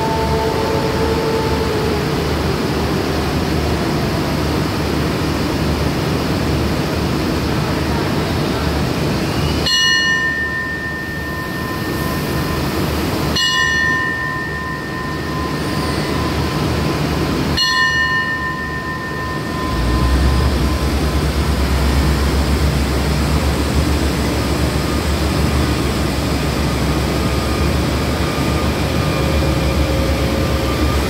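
Three bell strikes about four seconds apart, each ringing out for a couple of seconds: the station's departure signal. A train's diesel engines rumble steadily throughout, then rev up strongly about two-thirds of the way in as the train pulls away from the platform.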